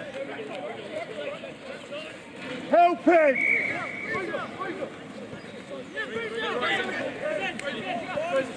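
Shouts and calls from players and touchline spectators at a youth rugby match, with one louder shout about three seconds in.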